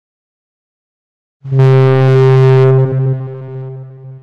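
A single deep, horn-like synthesized tone with rich overtones starts suddenly about a second and a half in, holds loud for about a second, then fades away.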